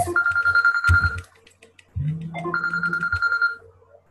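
A telephone ringing with an electronic ringtone: a steady high beep that sounds twice, each ring about a second long, the second ending shortly before the end, with a lower buzz under the rings.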